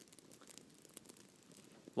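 Near silence with faint, scattered crackling, with a man's voice starting right at the end.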